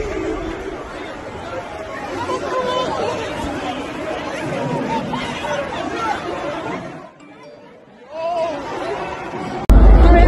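A dense crowd of many people talking and shouting over one another, which almost drops out for about a second around seven seconds in. Just before the end it cuts suddenly to a much louder low rumble with voices.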